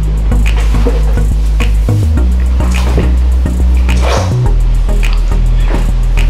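Background music with a steady bass line and regular beats.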